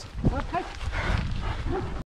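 A large long-haired dog gives a few short calls, over footsteps and a steady low rumble. The sound cuts off abruptly at the end.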